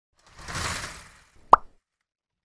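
Logo-intro sound effect: a short whoosh that swells and fades over about a second, then a single sharp pop about a second and a half in.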